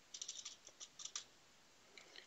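Quiet computer keyboard typing: a quick run of light keystroke clicks in the first half, then a pause.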